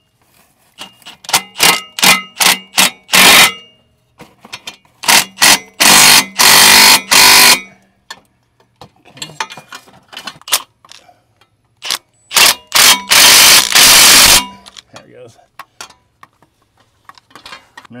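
Power impact wrench driving a socket on an extension to run up the downpipe flange nuts. Short trigger blips come first, then two long runs of rapid hammering about five and twelve seconds in.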